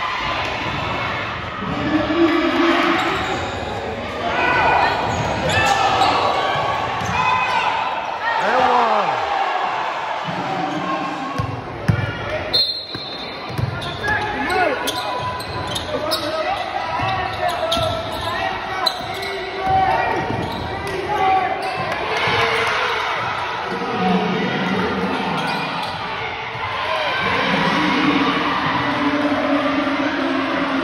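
Basketball bouncing on a gym court amid many voices from players and crowd, echoing in a large hall.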